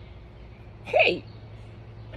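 A single short vocal sound from a woman about a second in, lasting about a third of a second, its pitch sliding steeply down.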